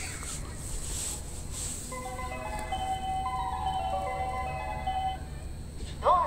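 Station departure melody: a short electronic chime tune of stepping notes, starting about two seconds in and lasting about three seconds, over a steady low hum.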